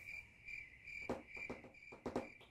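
Cricket chirping: a faint, high trill repeating in short chirps, with a few faint knocks about a second in.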